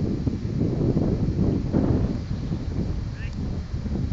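Wind buffeting the camera microphone: a steady, loud rumble, with a couple of short high chirps, one at the start and one about three seconds in.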